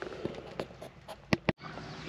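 A few light clicks and taps, then two sharp clicks close together about a second and a half in, after which the sound cuts out abruptly.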